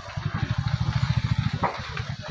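A motorcycle engine running close by, a fast, even low putter that is strong for about a second and a half and then drops away.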